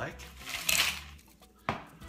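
A short hiss about two-thirds of a second in, then a single sharp knock near the end as a metal cocktail shaker is set down on a counter.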